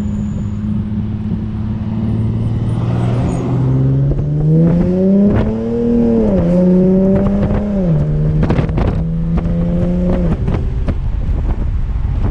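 Infiniti G37 coupe's 3.7-litre V6 with catless exhaust and cold air intake, heard from inside the cabin while driving. The engine note holds steady, rises under acceleration, drops at an automatic upshift about six and a half seconds in, then drops again at a second shift near eight seconds and holds level. A few short knocks sound over it.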